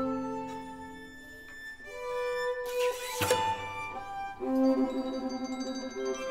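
Small chamber ensemble of strings, winds, piano and percussion playing a film score: held violin and wind notes fade to a quiet passage. About three seconds in comes a short bright noisy percussion stroke, then the ensemble comes back louder with quick repeated notes.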